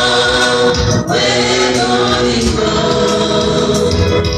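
Church choir of mixed voices singing a Swahili gospel song into microphones, amplified through loudspeakers, with a brief break in the sound about a second in.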